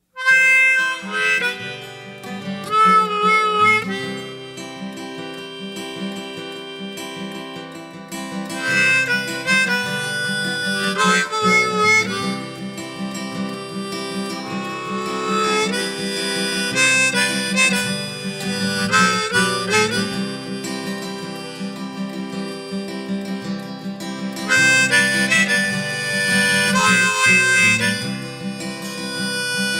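Instrumental song intro in which harmonica and acoustic guitar play, starting suddenly after silence.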